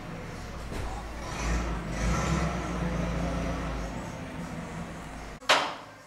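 Container bulk loader running empty on a dry test, a steady low machine hum that grows louder about a second in and then eases off. Near the end the hum cuts off abruptly and a short, sharp noise follows.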